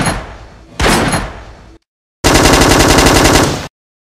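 Gunshot sound effects: a single loud shot with a decaying tail just under a second in, then, after a brief silence, a rapid burst of automatic fire lasting about a second and a half that cuts off.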